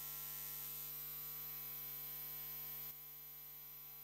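A gap in the music, leaving only a steady electrical mains hum with a buzz of overtones from the sound system. It drops a little in level about three seconds in.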